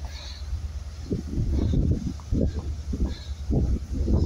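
Wind buffeting the handheld camera's microphone: a continuous low rumble, with irregular muffled gusts from about a second in.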